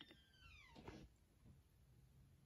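Near silence: room tone, with one faint falling squeak-like tone in the first second.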